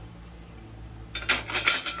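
Glazed ceramic dishes clinking against each other, a quick run of several sharp clinks starting a little past halfway and lasting under a second.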